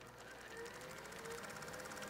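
Faint, slowly swelling mechanical whirr with a rapid fine clatter and a faint wavering tone.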